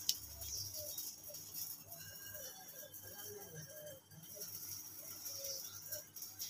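Wires and component leads being handled by hand: a light click at the start, then faint, short wavering tones repeating in the background.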